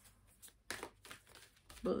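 Tarot cards rustling and sliding as they are handled, in several short rustles starting about half a second in.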